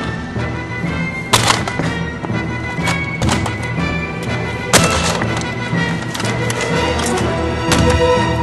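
Background music with a steady beat, over irregular sharp knocks and cracks of a plastic computer keyboard being smashed against pavement.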